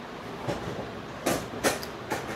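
Plastic wheels of a child's toy ride-on tricycle rolling over a hard floor, a steady rumble with a few sharp clacks in the second half.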